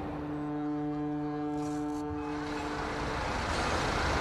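A ship's horn sounding one long, steady blast that fades out after about three seconds, over a low background of port noise.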